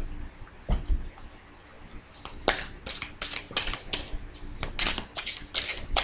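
A large tarot deck being handled: two soft thumps in the first second, then from about two seconds in a run of quick, crisp card clicks, about five a second, as the cards are shuffled.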